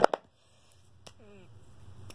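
A single sharp plastic click of an art marker being handled, then near quiet with a brief murmur of a voice about a second in.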